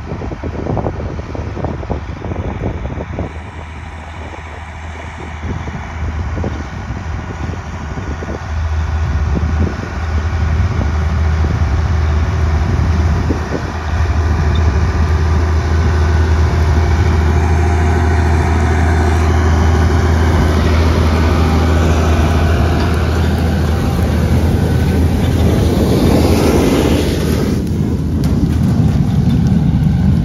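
Farm tractor engine running steadily as it pulls a propane stubble-burning rig, getting louder about a third of the way in as the rig comes closer. Wind buffets the microphone in the first few seconds, and a rushing noise swells near the end as the rig passes close.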